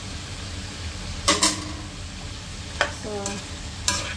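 Sliced ampalaya sizzling in a frying pan as a spatula stirs it, with sharp scrapes and knocks of the spatula against the pan about a second in, near three seconds and near the end; the knock about a second in is the loudest.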